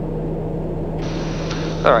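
Steady cockpit drone of a Daher TBM 960 turboprop in flight, with a constant low hum. A brighter hiss joins about a second in, and a voice starts near the end.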